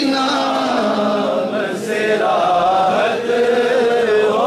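A man singing a naat, an Urdu devotional poem in praise of the Prophet, into a microphone, in long held notes that bend and waver in ornamented lines.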